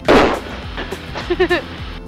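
A sudden loud burst of breath from a laugh blowing straight into a headset boom microphone, followed by short bits of laughter over the intercom.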